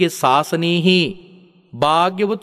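A Buddhist monk's voice preaching in an intoned, chant-like delivery. It trails off about a second in and starts again just before the end.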